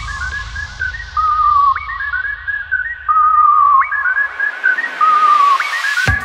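Sped-up (nightcore) electronic hands-up dance track in a breakdown: a high, whistle-like lead melody repeats a short falling phrase about every two seconds. The bass fades and drops out about four and a half seconds in, while the treble is filtered down and then opens up again toward the end.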